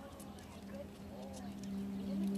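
Chihuahuas' claws tapping on a hard floor, with a few faint short whines, over a steady low hum.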